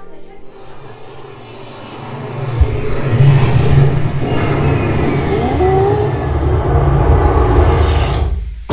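Theme-park attraction pre-show sound effects: a loud low rumble swells in about two and a half seconds in and holds, with gliding, sweeping tones over it and a music bed beneath.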